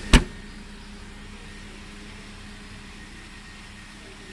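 A Perodua Bezza's boot lid slammed shut, one sharp bang just after the start. The car's 1.3-litre engine idles steadily behind it.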